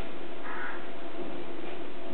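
A crow cawing once, a short harsh call about half a second in, over a steady background hiss.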